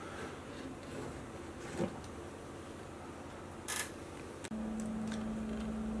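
Faint rubbing from a 3D-printed plastic harmonic drive being turned by hand, with a small click about two seconds in and a short scrape shortly before four seconds. About four and a half seconds in, a steady low electrical hum starts.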